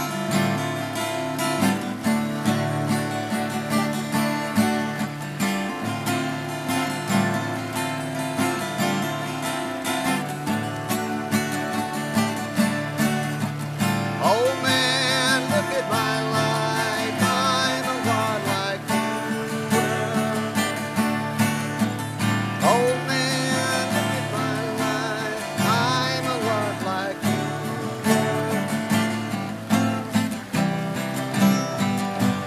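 Three acoustic guitars strummed together in a steady rhythm. A wavering lead melody comes in twice over the chords, once around the middle and again near the end.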